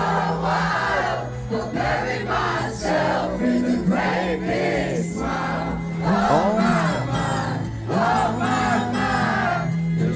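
Live acoustic band performance: sustained bass notes with acoustic guitar and violins under a singer, and the crowd singing along.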